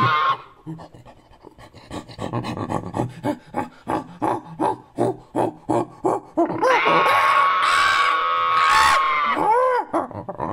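Ape-like creature calls: a high call cuts off at the start, then after a short lull a run of short panting hoots, about three a second, builds into one long, loud, high-pitched scream, followed by a couple more pants near the end.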